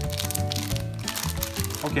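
Background music over the crinkling of a clear plastic wrapper being torn open and handled around a self-heating hot pot's heating pack.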